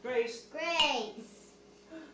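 A high-pitched voice makes two short vocal sounds in the first second or so, with no clear words. The second sound glides up and then down in pitch.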